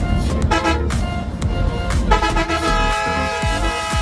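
A vehicle horn sounds in a short toot about half a second in, then holds one long steady blast of about two seconds from about two seconds in, over background music with a steady beat.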